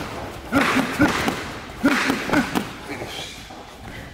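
Boxing gloves striking a trainer's padded training sticks a few times during a sparring drill, with short shouted calls in between.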